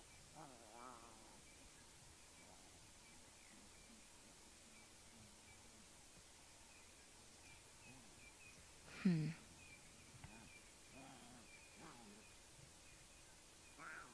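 Lions calling at low level: a short wavering, complaining call near the start and a few weaker ones later. About nine seconds in comes a single louder growl that falls in pitch. The guide takes this for a grumpy cub being reprimanded by the pride.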